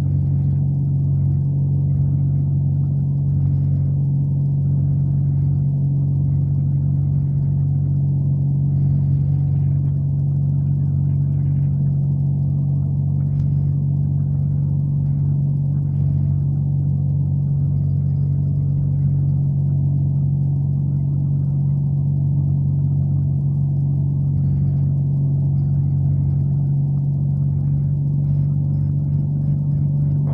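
Corvair 3.0 air-cooled flat-six aircraft engine and propeller running steadily in flight, heard from inside the cockpit as a constant low drone.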